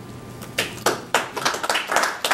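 A few people clapping: sharp, scattered claps starting about half a second in and going on at a few a second.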